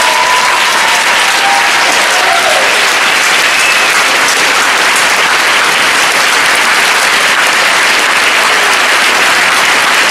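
A large theatre audience applauding, steady and sustained.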